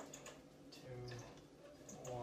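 Faint ticking of a yellow rotary-dial telephone as its dial is turned and spins back.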